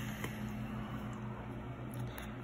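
Quiet room tone with a steady low electrical hum, and one faint click about a quarter second in.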